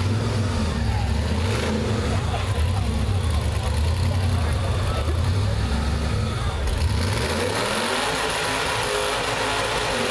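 Rock bouncer buggy's engine running hard at high revs, with a long rising rev about three quarters of the way through; crowd voices underneath.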